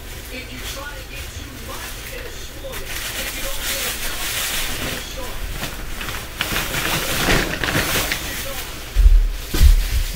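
Two heavy, low thuds near the end, over a steady hiss with faint muffled speech in the background; the recorder takes such thuds for neighbours jumping and stomping on the floor.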